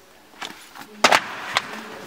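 Magazines and books dropping onto a hard floor: a few short knocks and paper slaps with some rustling of pages, the loudest about a second in.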